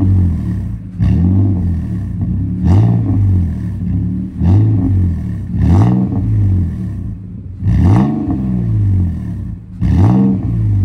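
Nissan Frontier Pro-4X's 4.0 L V6, breathing through a 3-inch MBRP stainless cat-back exhaust, revved in short blips with the truck standing still: about six rises and falls in pitch, each dropping back toward idle.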